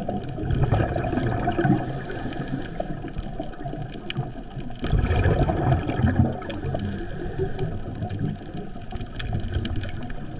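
Underwater water noise with bubbling and gurgling, swelling twice into louder rumbling stretches: first from about half a second to two seconds in, then from about five to six and a half seconds in.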